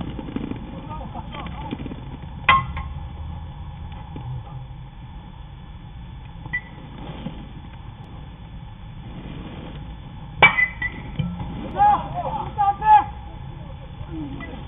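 Aluminium baseball bat striking the ball: a sharp metallic ping with a brief ring about ten and a half seconds in, followed by players shouting. An earlier, quieter sharp knock comes about two and a half seconds in.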